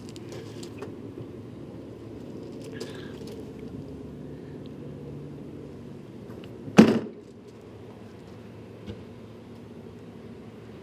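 A motorhome's basement storage door shut with a single sharp bang about seven seconds in, over a steady low hum.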